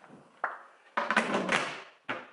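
A large storage box and its lid being handled: a short knock about half a second in, then about a second of louder clattering and rustling as the box is moved.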